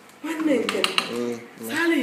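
A metal spoon clinking and scraping against a metal cooking pot of rice, with a quick run of clinks near the middle.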